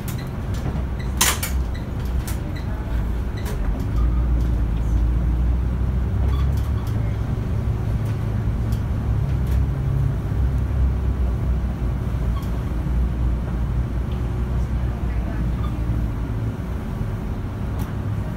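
Inside a Volvo city bus on the move: a steady low engine and drivetrain rumble that grows louder about four seconds in as the bus pulls along, with scattered rattles and clicks from the cabin and a sharp rattle about a second in.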